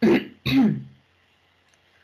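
A woman clearing her throat with two short, harsh coughs in the first second, her voice giving out.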